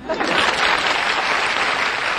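Studio audience applauding. The applause starts suddenly and runs loud and steady.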